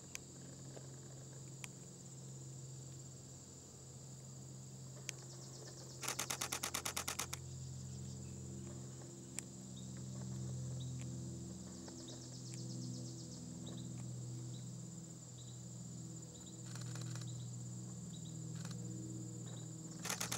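Outdoor summer ambience: a steady high-pitched insect drone under the low, wavering wing hum of a ruby-throated hummingbird hovering at a nectar feeder. About six seconds in comes a loud, rapid rattling burst of a dozen or so pulses, with shorter ones later.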